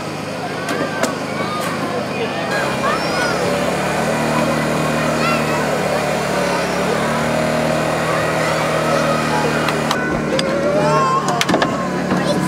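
About two and a half seconds in, a small engine starts and runs steadily. It fits the hydraulic power unit that drives a rescue spreader/cutter on its hoses during a car extrication, heard over crowd chatter.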